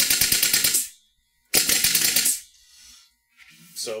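Sweeney special-effects capsule launcher cycling on full auto off a compressor line, its fire-control knob screwed fully open: a rapid, even string of pneumatic shots with a hiss of exhausting air. The first burst ends about a second in, and a second, shorter burst comes about a second and a half in.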